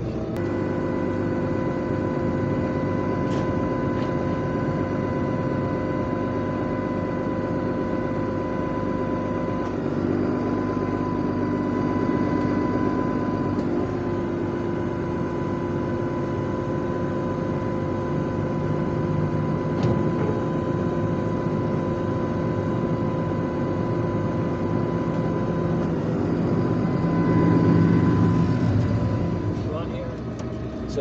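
Tractor running steadily from inside the cab while its hydraulics power the trailer's cover open, with a steady whine. The pitch shifts about ten seconds in, and the sound grows louder near the end.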